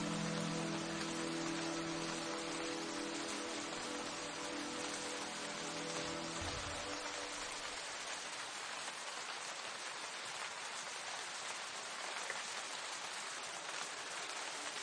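Steady rain sound, an even patter and hiss, under a soft piano chord that dies away over the first half; after that only the rain is heard.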